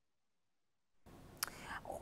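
Dead silence for about a second, then faint room hiss from an opened microphone, with a light click and a soft breath just before speech.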